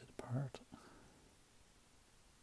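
A brief muttered vocal sound from a man, with a few small sharp clicks, in the first half second; then near silence with faint room tone.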